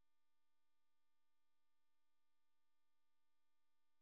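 Near silence: the recording is gated down to the noise floor between phrases of narration.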